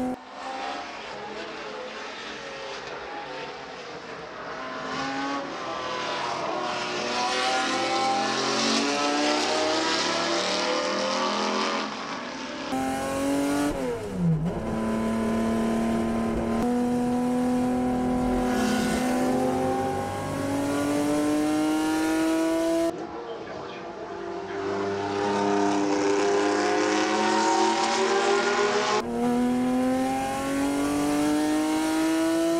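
In-cockpit sound of a Ferrari 365 GTB/4 Daytona's V12 at racing speed. The engine note drops suddenly as the driver lifts off at the start, climbs steadily as the car accelerates, and sweeps sharply down on a gear change midway. It drops again about two-thirds through, then rises once more under acceleration.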